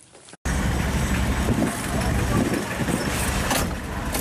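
Car engine and road noise heard from inside the cabin of a moving car, a loud low rumble with wind hiss. It cuts in suddenly about half a second in, after a brief near-silence.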